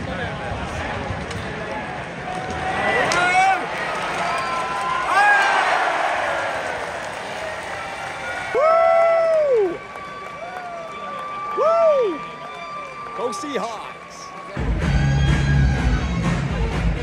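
Ice hockey arena crowd noise with cheering and applause, fans standing and waving. About halfway through, a few loud rising-and-falling pitched calls sound over the crowd, and loud music with a heavy low end starts over the arena's sound system near the end.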